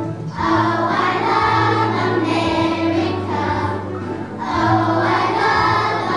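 A kindergarten children's choir singing together over a musical accompaniment, in phrases of about two seconds with brief breaths between them.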